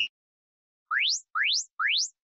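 Electronic interval-timer signal: the last short beep of a once-a-second countdown, then, about a second in, three quick rising chirps about half a second apart. It marks the end of the rest interval and the start of the work interval.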